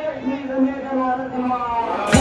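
A man's voice chanting in long, slowly bending held notes.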